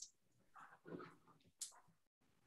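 Near silence, with a few faint short sounds about half a second and a second in, and once more near the end.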